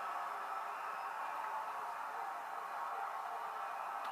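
Steady low hiss of room and microphone noise with no voices and no distinct events.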